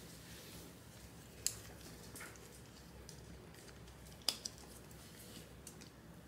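Faint room tone with a few small sharp clicks as a dog's nylon collar and its AirTag holder are handled and fastened: one click about a second and a half in, and a quick pair just after four seconds.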